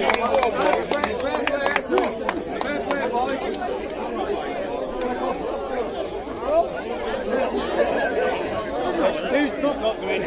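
Crowd of men chattering, many voices overlapping with no single speaker standing out. A few light clicks sound in the first couple of seconds.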